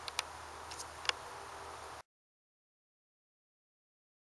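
Faint outdoor background with a few small sharp clicks, then the sound cuts off to complete silence about halfway through.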